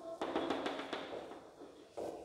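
Chalk tapping and scratching on a blackboard while numbers and a column of dots are written: a quick run of light taps through the first second, thinning out toward the end.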